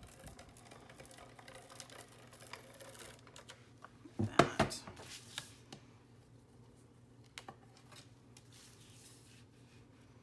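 Paper and craft tools handled on a cutting mat: light clicks and paper rustles, with a short cluster of sharper clicks and clatters about four seconds in.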